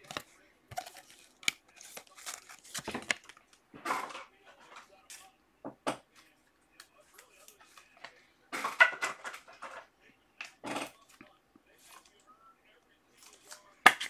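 Trading cards and pack wrappers being handled at a desk: scattered short rustles, flicks and crinkles, with a louder cluster of rustling a little past halfway.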